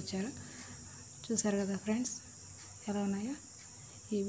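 A woman's voice speaking in three short phrases over a steady, high-pitched chirring of crickets.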